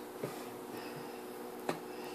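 Plastic screw cap being twisted off a bottle of cream, with a soft tick early and one sharp click near the end, over a faint steady hum.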